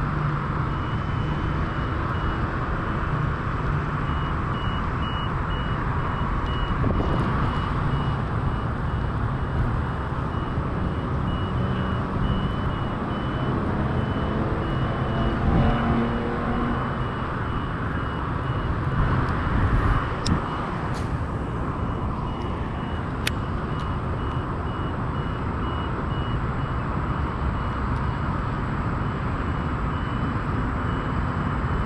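Steady outdoor traffic rumble and wind on the microphone, with a vehicle reversing alarm beeping at an even pace. Two sharp clicks come near the end.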